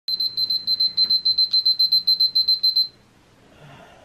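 Smartphone alarm beeping in quick, even, high-pitched pulses, about six a second, then cutting off suddenly just under three seconds in as it is switched off.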